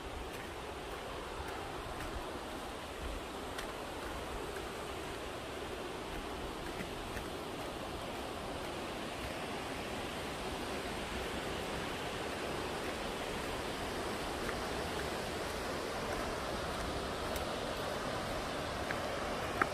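Steady rushing of a waterfall and its creek, growing slowly louder, with a few faint footsteps on the dirt trail.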